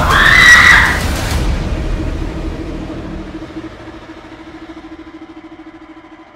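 A loud cinematic boom with a short cry of 'À!' dies away over a few seconds. It leaves a low, fluttering drone that fades in under the episode title card.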